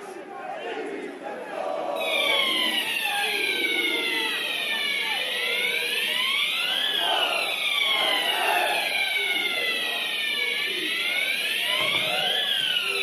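A wailing siren comes in about two seconds in: several overlapping tones rise and fall slowly in pitch, cresting about every five seconds, over a murmur of crowd voices.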